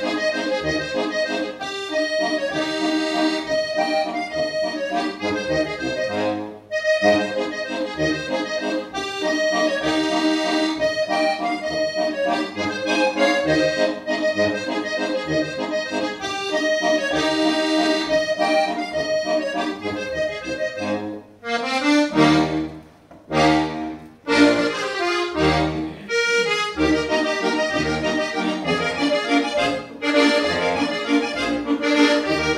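Two diatonic button accordions (Knopfharmonika) playing a Ländler together: sustained melody chords over a steady rhythm of low bass notes. About twenty-one seconds in, the playing thins to a few separate notes with short gaps, then the full chords return.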